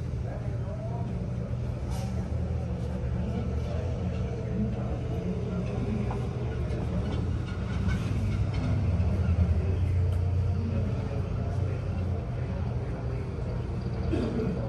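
Low, steady rumble of road traffic from the street below, including a bus, swelling a little louder about two-thirds of the way through, with faint voices.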